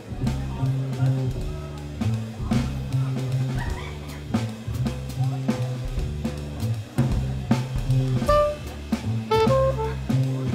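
Jazz trio playing: an upright bass plucks a repeating low line under a drum kit, and a soprano saxophone comes in with short notes about eight seconds in.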